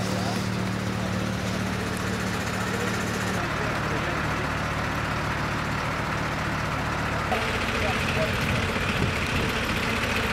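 Diesel engine of a MAN fire engine running steadily at idle, a low even hum. Its sound changes abruptly twice, a little over three seconds in and about seven seconds in.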